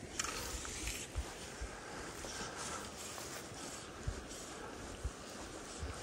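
Quiet outdoor ambience with several faint, short low thumps spread through it: distant gunshots from bird hunters. A brief rustle of fly line being handled comes just after the start.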